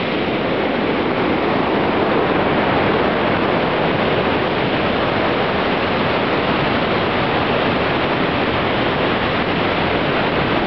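Whitewater river rushing over boulders: a loud, steady roar of water that does not change.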